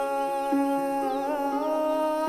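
Background music: a voice humming long, held notes of a slow melody over a steady drone.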